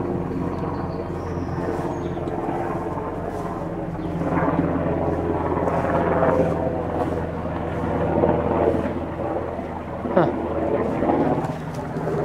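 Helicopter flying overhead out of sight, a steady droning hum that swells louder in the middle.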